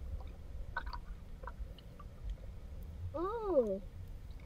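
Underwater ambience of a spring: a steady low rumble of water against the camera, with scattered small clicks. About three seconds in, a short voice-like hum rises and then falls in pitch.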